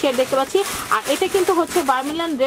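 A person talking, continuous speech with no other sound standing out.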